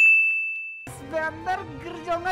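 A single bright bell ding: struck once, one clear high tone rings on and fades away within about a second. Indistinct voices start up after it.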